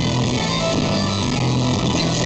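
Live rock band playing a passage between sung lines, with guitar over held, changing bass notes. It is recorded from the crowd and sounds a little bassy.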